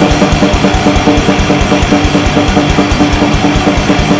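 Fast grindcore drumming on an acoustic drum kit: rapid kick and snare strokes many times a second under a steady cymbal wash, played along with a distorted guitar track.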